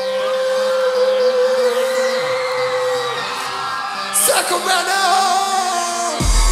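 Live crunkcore music in a breakdown with the kick drum and bass dropped out: a long held note for about three seconds, then a louder wavering vocal line from about four seconds in.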